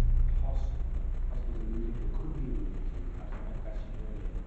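Faint pigeon cooing, several short coos, over a low rumble that fades during the first second or two.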